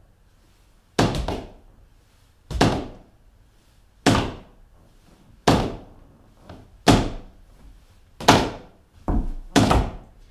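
Balls of shoes brushing and slapping a hardwood floor about every second and a half, eight times, a couple of them doubled: the single brush of a tap shuffle, practised slowly with a relaxed ankle.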